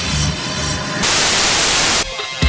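Rock music with heavy low notes cuts off about a second in and gives way to about a second of loud, even TV static hiss, a channel-change effect.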